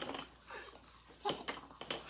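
Quiet, scattered clicks and rustles of fast-food packaging and food being handled and eaten, a few short sounds at irregular moments.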